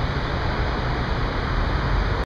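Steady rushing outdoor noise with a deep low rumble and no voices.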